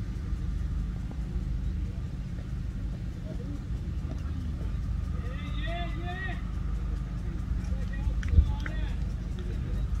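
Ambience of a cricket field: a steady low rumble, with faint distant players' voices calling out around the middle and one sharp knock about eight seconds in.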